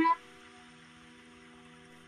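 Faint, steady background music: a few soft held tones sustained without change.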